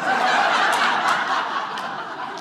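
Audience laughing, breaking out suddenly and continuing loud throughout.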